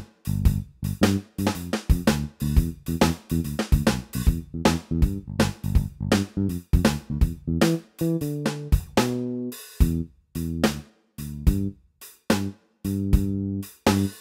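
Digitech Trio Band Creator pedal playing its generated bass-and-drums backing while its tempo is turned up and down. Drum hits and bass notes run in a steady pattern, then stop and restart several times with short gaps in the second half as the tempo changes.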